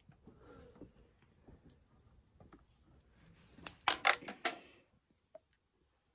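Motor oil being poured from a plastic jug into a funnel: faint for the first few seconds, then a quick run of loud, sharp clicks and crackles lasting under a second, a little past halfway, as the plastic jug glugs and flexes.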